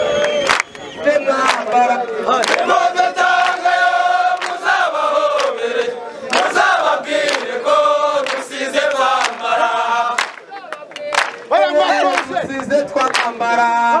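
A large crowd of men singing together, a chant-like song in held notes, with hand claps cutting through it; the singing drops briefly a little after ten seconds in, then picks up again.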